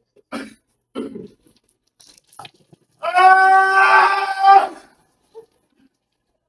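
Two short coughs or breaths, then a person's voice letting out a drawn-out cry held at one pitch for nearly two seconds.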